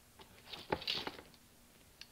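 Faint handling noises and footsteps as a pair of vise grips is picked up and carried across a shop floor: a few soft rustles and knocks with one sharp click about three-quarters of a second in.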